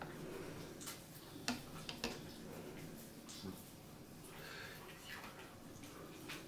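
Faint, scattered clicks and scrapes of a metal spoon working in a plastic jar of peanut butter, with about four sharp light ticks and a soft scrape a little past the middle.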